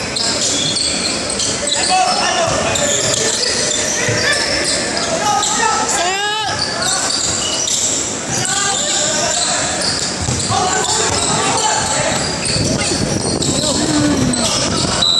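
A basketball game on an indoor hardwood court: the ball bouncing, sneakers squeaking in short high chirps, and players and spectators shouting, with one loud shout about six seconds in. It all echoes in a large hall.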